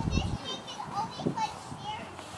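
A child's high-pitched voice in short, excited calls or squeals that the recogniser did not write down, over a brief low rumble of wind on the microphone at the start.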